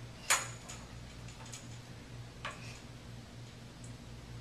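Hands grabbing and gripping a steel pull-up bar: one sharp metallic clack just after the start, then a fainter knock about two and a half seconds in, with a few light ticks between, over a steady low hum.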